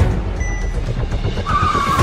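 A car's engine rumbling as it pulls away hard, with its tyres starting to squeal near the end, under a film score.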